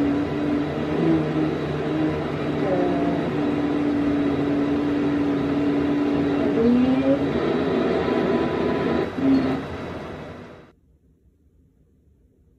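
A patient's voice, a few weeks after voice feminization surgery, holding a vowel during a laryngeal scope exam. The vowel stays on one steady pitch for several seconds with a brief break, then glides up and down near the seven-second mark, over a steady background hum. Everything cuts off suddenly about ten and a half seconds in.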